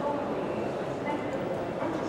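Railway station concourse ambience: a steady murmur of distant voices and hubbub under a high roof, with a few faint, short, high-pitched sounds about a second apart.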